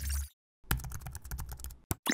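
Computer keyboard typing sound effect: a short whoosh with a low boom, then a fast run of key clicks lasting about a second, ending in a single sharp click.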